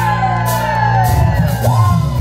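Live band playing through a festival PA, a held bass chord with a woman's voice calling out over it; about a second in, the drums and bass break into a beat as the song kicks off.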